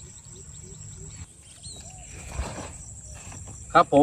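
Steady, high-pitched drone of insects over a rice field, with a low rumble of wind on the microphone. There is a brief rustle about two and a half seconds in, and a man's voice briefly near the end.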